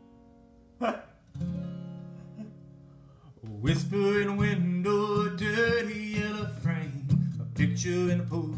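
Acoustic guitar: a single strummed chord about a second in, a chord left ringing and fading away, then steady rhythmic strumming that starts about three and a half seconds in as the song's intro.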